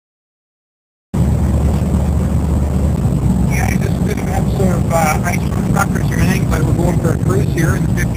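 1955 Fargo pickup's 251 flathead six-cylinder engine running at road speed, heard from inside the cab as a steady low drone that cuts in suddenly about a second in. A man talks over it from a few seconds in.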